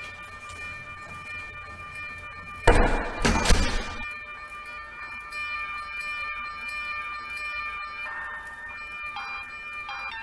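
Background music of steady held chords, with one loud, rough burst lasting about a second, around three seconds in.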